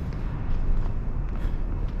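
Steady low outdoor city rumble, with a few faint footsteps on stone paving as the walker moves through the courtyard.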